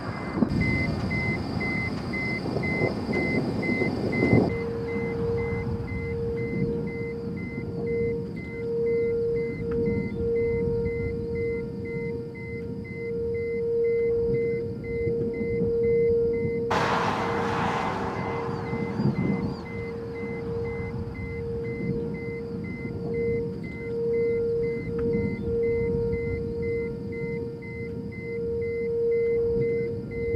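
A steady held drone of background music, one sustained tone with a fainter, higher pulsing tone above it, over a bed of rumbling wind and road noise. A short rush of noise comes about seventeen seconds in.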